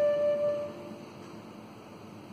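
Flute holding its last long note over a piano chord. The note stops under a second in and the piano dies away into the room's quiet.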